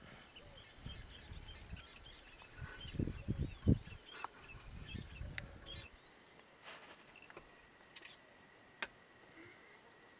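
Faint chirping of small birds in the background. Low thuds and rumbles come through for the first six seconds, loudest about three and a half seconds in, then stop.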